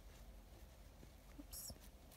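Near silence with faint pencil strokes on a workbook page as a word is handwritten, and a short soft hiss about one and a half seconds in.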